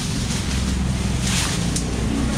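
A steady low engine rumble, like a motor idling close by, with two short bursts of plastic-bag rustling about a second apart.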